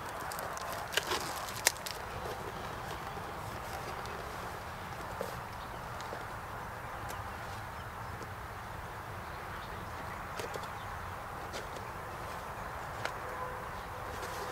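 Steady faint outdoor background noise with a few sharp clicks and taps from a cardboard box being cut open and handled, the loudest about a second in.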